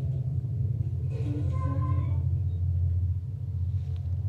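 A steady low hum, with a few faint brief tones about a second in.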